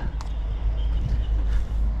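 Steady low outdoor rumble, with a single short click just after the start.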